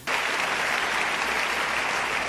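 Audience applauding: steady clapping from many hands that starts suddenly.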